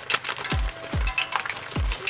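Clear plastic zip-top bag crinkling and clicking as it is handled and opened, over background music with deep bass drum hits that drop in pitch, three of them.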